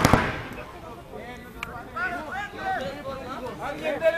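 Two quick sharp pops right at the start, paintball markers firing, with a fainter pop about one and a half seconds in; several people's voices call out in the background after that.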